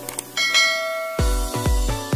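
Stock click and bell-chime sound effect of a subscribe-button animation: a couple of light clicks, then a ringing chime that fades. Just after a second in, electronic dance music with a heavy bass beat, about two beats a second, comes in.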